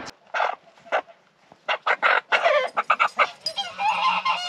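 Chickens clucking and squawking in short calls: a few scattered ones at first, then coming thick and fast over the last two seconds.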